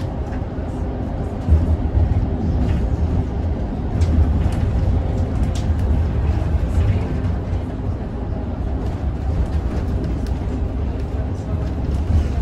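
Cabin noise of a moving shuttle bus: a steady low rumble of engine and tyres on the road, with a few light knocks.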